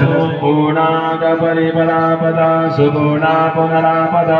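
Men's voices chanting Sanskrit mantras for a havan fire offering, in long, evenly held tones.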